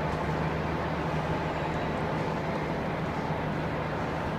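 Steady ambient hum and rumble of a large train station hall, with a constant low hum and a fainter, higher steady tone running through it.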